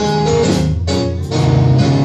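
Live band playing a gospel accompaniment: electric bass, keyboard and drums, with a few drum strikes.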